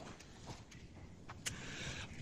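Faint handling of a plastic Blu-ray case and disc: a few light clicks over a low background hiss.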